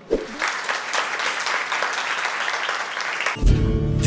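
A roomful of students clapping for about three seconds. Background music then cuts in abruptly near the end.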